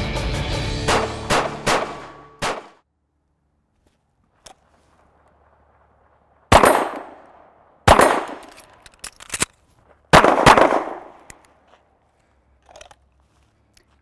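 Pistol shots on an outdoor range, each with an echoing tail. Over music at first there are a few quick shots. After a pause come two spaced shots, a few light clicks, then two quick shots in succession.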